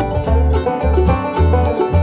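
Acoustic bluegrass band playing a short instrumental passage between sung lines, with plucked banjo and guitar over bass notes on a steady beat of about two a second.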